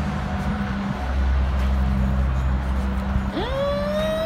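A low steady hum, then about three seconds in a person's voice rises and holds one long tone.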